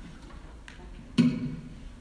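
Quiet room tone with a faint click, then a handheld microphone switching on with a sudden pop a little after a second, its sound jumping in level as a man speaks into it.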